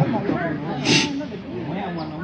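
A pause in amplified talk, with faint voices in the background and one short hiss about a second in.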